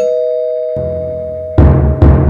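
Two-tone doorbell chime, its lower second note ringing out, then a low rumble and two loud, deep drum booms near the end, like the hits of a suspense music score.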